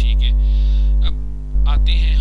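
Loud, steady electrical mains hum on the recording, a low buzz with a ladder of overtones, briefly dropping in its lowest part about a second in.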